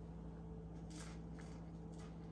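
Quiet room with a steady low hum, and a faint crunch or two of a saltine cracker being chewed about a second in.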